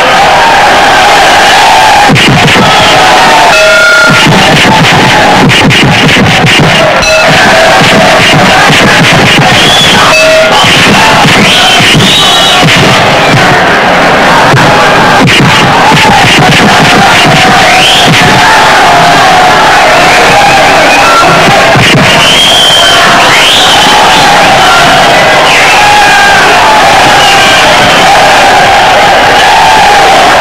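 Background film music mixed with a crowd shouting and cheering, loud throughout, with a quick run of sharp hits about a quarter of the way in.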